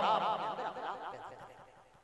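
A man's amplified voice trailing off at the end of a sung Arabic phrase, quavering quickly in pitch and fading away about one and a half seconds in.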